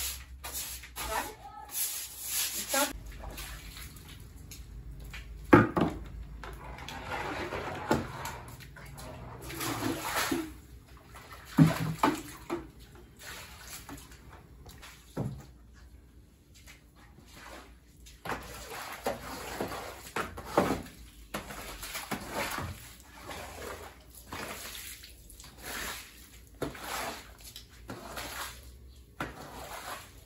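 Stiff broom scrubbing a wet, soapy floor in repeated swishing strokes, with water sloshing under the bristles. Two sharp knocks stand out, about five and twelve seconds in.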